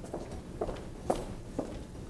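Footsteps walking across a stage, about two steps a second, each a short knock; the loudest comes about a second in.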